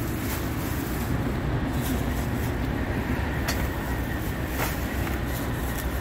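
Steady low rumble of vehicle noise, like an engine running or traffic nearby, with a couple of faint light clicks.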